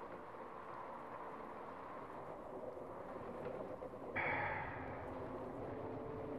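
Faint, steady background ambience with a low hum. About four seconds in comes a breathy sigh that fades over about a second.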